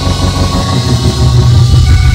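Live gospel praise-break music: organ over heavy bass and drums.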